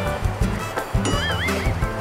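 Background music with a steady beat. About a second in, a horse-whinny sound effect comes in over it as a short, high, wavering call.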